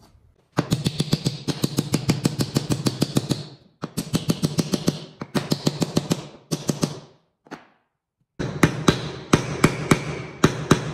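Rapid series of sharp knocks, about seven or eight a second, in several bursts with brief pauses between them.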